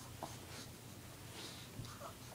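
Faint scratchy scuffing of a Shih Tzu's body and fur rubbing on carpet as it squirms and rolls with a plush toy, a few short rustles over a low hum.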